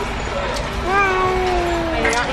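An infant's voice: one drawn-out vocal sound about a second long, starting near the middle and falling slightly in pitch, over steady background noise.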